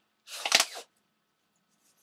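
A single short puff of breath blown into a thin latex glove to open it out before pulling it on, about half a second long.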